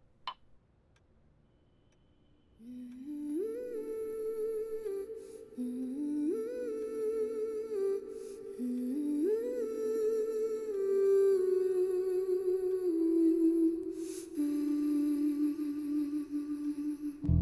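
A wordless humming voice carries a slow melody, starting about two and a half seconds in after a near-silent opening with one faint click. It comes in three phrases, each sliding up and then stepping down.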